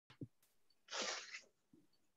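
A half-second burst of breath noise from a person close to a webcam microphone, with a faint short low bump before and after it.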